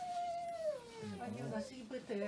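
A person crying: a long wail that falls in pitch over about a second, then lower, broken sounds.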